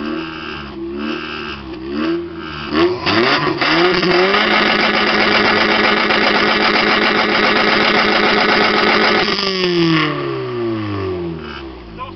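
Car engine heard at the exhaust, revved in a few quick blips, then held steady at high revs for about five seconds and let fall back to idle: a held-rev reading for a sound level meter at the tailpipe.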